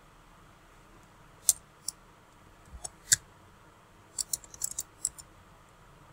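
Computer keyboard keystrokes and mouse clicks: a few single clicks in the first half, then a quick run of keystrokes about four to five seconds in, as text is deleted in the code editor.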